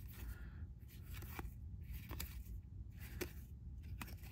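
Glossy baseball trading cards being slid one behind another in the hands, giving faint papery swishes and a few light clicks of card edges.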